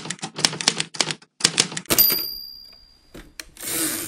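Typewriter sound effect: a quick run of key strikes, then a bell ringing once about two seconds in and fading away, then a longer rasping slide near the end.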